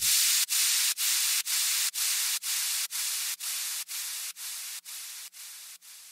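Outro of a bass house track: the bass and beat drop out, leaving a hissing white-noise sound chopped into even pulses about twice a second on the beat, fading steadily away.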